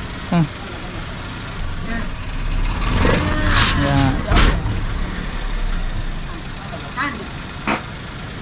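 A small hatchback's engine idling steadily, a low rumble under the whole stretch, with one sharp knock about four seconds in.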